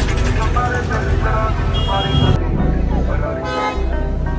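Busy street traffic with vehicle horns honking and people's voices around. A steady high-pitched horn tone sounds a little after halfway.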